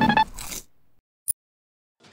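Short transition sound effect: a brief steady tone and a swish in the first half second, then silence broken by one brief click about a second and a quarter in.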